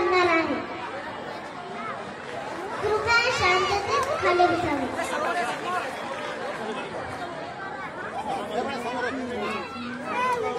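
Chatter of a gathered crowd: many voices talking over one another, with no single speaker standing out.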